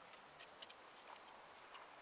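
Near silence: faint outdoor ambience with a few soft, irregular ticks.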